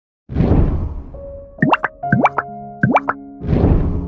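Intro jingle of sound effects and music: a whoosh, then three quick rising bloops, each leaving held musical notes, then a second whoosh.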